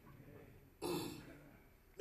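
A man clears his throat once into a handheld microphone, a short, sudden burst about a second in that dies away within half a second.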